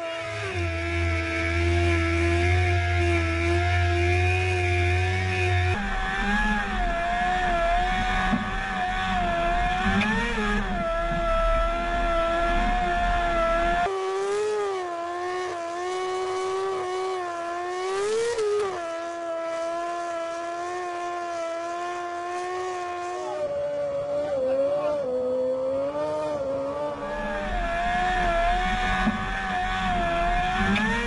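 Formula One car's engine held at high revs while its rear tyres spin against a pull. The pitch wavers up and down, with abrupt jumps where the shots change.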